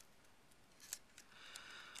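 Near silence with faint handling sounds: fingers pressing and smoothing clear packing tape over a balsa stick on paper, with one sharp click about a second in.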